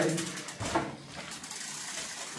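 A loaded bicycle being wheeled and handled: its rear freewheel ticks rapidly near the start, followed by a couple of light knocks.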